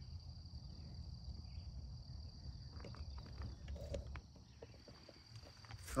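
Insects chirring in a steady, high, even drone over a faint low rumble. The chirring weakens a little past halfway, and a few faint ticks sound in the second half.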